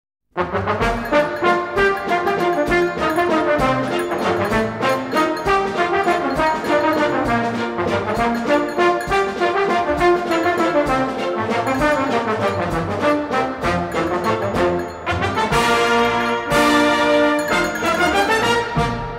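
Operetta orchestra playing an instrumental introduction with brass to the fore. It starts abruptly with a lively run of short, rhythmic notes, then settles onto held chords near the end.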